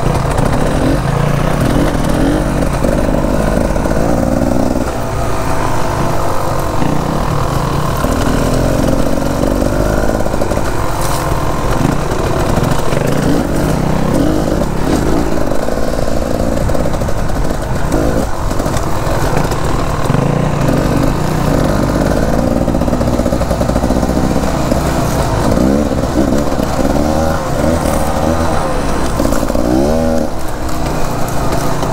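Enduro dirt bike engine heard up close from the bike being ridden, its revs rising and falling over and over as it is worked along a tight dirt trail.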